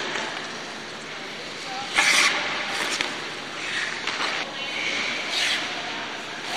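Hockey skate blades carving on rink ice, with short scrapes about two seconds in, near four seconds and again after five seconds.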